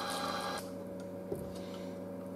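Low steady hum of room tone, with a hiss that drops away about a third of the way in and a single faint click past the middle.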